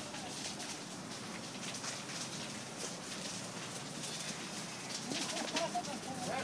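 Steady outdoor hiss with faint light crackles, and a bird calling in a few short wavering notes near the end.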